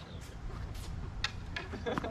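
A tennis ball bouncing on a hard court, a few separate sharp taps spread over two seconds.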